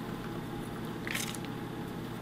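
Low steady room noise with one brief soft rustle about a second in, as pecan halves are pressed by hand into chocolate kisses softened on pretzels.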